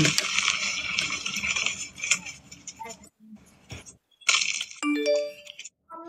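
Indistinct background noise that drops out briefly, then, about five seconds in, a short electronic chime of a few rising notes.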